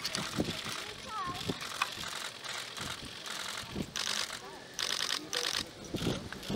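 Press camera shutters firing in short rapid bursts, about four seconds in and again around five seconds, over faint background voices of the press and onlookers.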